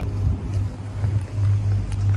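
Wind rumbling on a phone microphone on a moving chairlift: a steady low rumble with a faint hiss above it.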